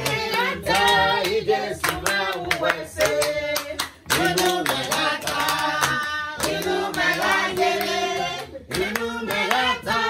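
A small group of people singing a song together and clapping their hands in a steady rhythm, with brief pauses in the singing about four seconds in and again near the end.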